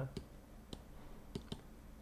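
Three faint, sharp clicks, roughly evenly spaced across a quiet pause.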